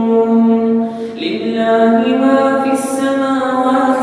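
Solo voice chanting Quran recitation in melodic tajweed style, drawing out long held notes. There is a short break about a second in and a hissed consonant near the end.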